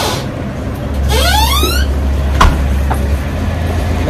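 Street traffic: a steady low engine rumble, with a sound rising steeply in pitch about a second in and two sharp clicks in the middle.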